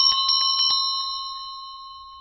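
A small bell sound effect, the subscribe-notification bell, struck in a quick run of rings for about the first second, then one clear ring slowly dying away.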